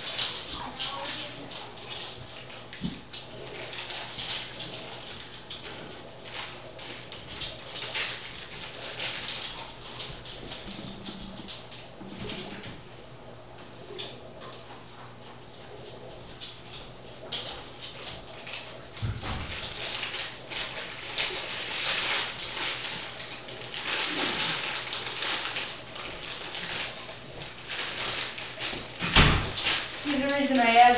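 Plastic cereal bag crinkling and rustling as it is handled, in irregular crackly bursts that get busier in the second half, over a steady low hum.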